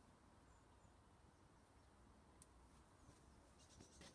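Near silence: faint outdoor background hiss, with one sharp click a little past halfway and a few faint clicks near the end.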